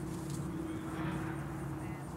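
An engine running steadily, a low even drone.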